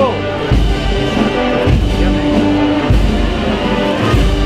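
Live Spanish wind band (banda de música: brass and woodwinds with percussion) playing a slow Holy Week processional march, with held chords and deep drum strokes about every second.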